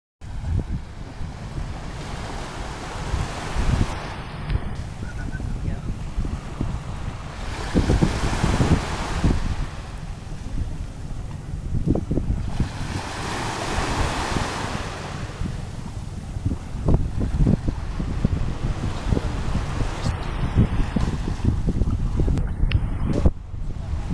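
Wind buffeting the microphone in gusts, over the wash of sea water at the shore; the gusts swell about four, eight and thirteen seconds in.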